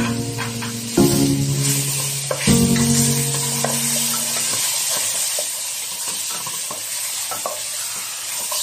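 Chicken pieces with shallots and ginger sizzling in hot oil in a nonstick pot, stirred with a wooden spatula that scrapes and taps the pot. A few sustained music notes sound over the first half.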